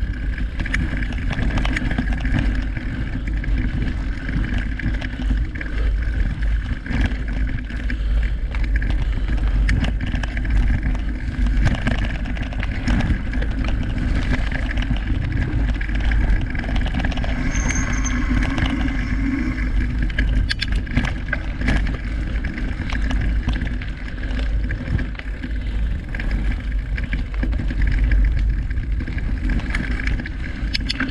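Mountain bike rolling over a dirt forest trail, heard from a handlebar-mounted camera: a steady rumble of tyres and wind buffeting the microphone, broken by frequent short rattles and knocks as the bike goes over bumps.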